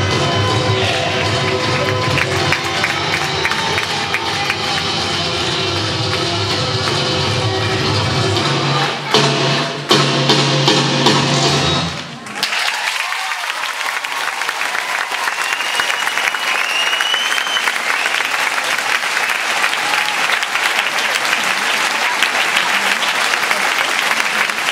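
Recorded accompaniment music plays and cuts off suddenly about halfway through, and an audience in a large hall breaks into applause and cheering that carries on, with a couple of rising whistles in it.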